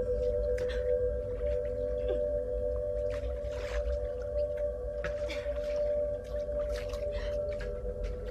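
Eerie horror-score drone: two steady tones held over a low rumble, with scattered brief noises.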